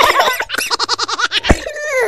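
A young girl laughing, giggling in quick repeated pulses, with a sharp click about one and a half seconds in.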